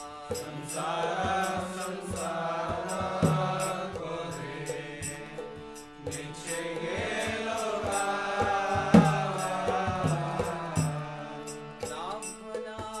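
A man singing a Vaishnava devotional song in long, wavering notes, over steady held accompaniment tones and a regular beat of high ticks. The singing pauses briefly about halfway through.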